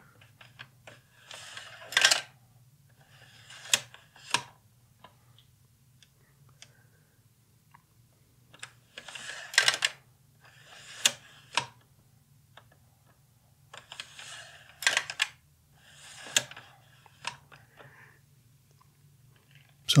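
Sawyer's Pana-Vue Automatic slide viewer's push bar being worked. The plastic mechanism clacks and rattles as each 35mm slide is pushed out into the left tray and the next is loaded onto the screen, in several pairs of clacks a few seconds apart.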